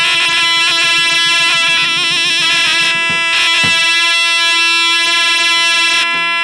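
Folk dance music on surle (zurna-type reed pipes): a shrill, piercing melody with long held notes and rapid trills, over lodër (large double-headed drum) beats that thin out after the first half.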